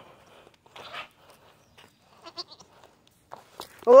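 A goat bleats near the end, a loud wavering call that rises and then falls in pitch. Before it there are only faint rustles and small clicks.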